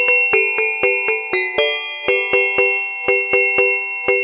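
A chime-like electronic melody: quick bell-toned notes at a steady pace of about four a second, each struck sharply and ringing on under the next.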